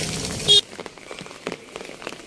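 Light rain pattering on wet pavement, with scattered small drip ticks. A short loud tone sounds about half a second in, after which the sound drops suddenly quieter.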